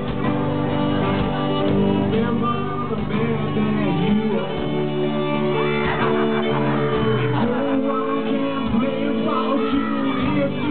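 Live band music, with guitar and fiddle lines among the instruments. The recording is dull, cut off above about 4 kHz.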